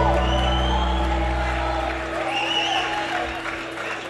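A live band's last chord ringing out and dying away, its low notes stopping about two seconds in, followed by the audience cheering with a few whoops.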